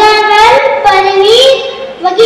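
A child singing solo, holding long notes that slide up from one pitch to the next.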